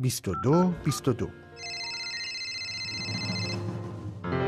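Radio music bed under a man's voice for about the first second. Then a steady, high electronic tone is held for about two seconds over soft background music.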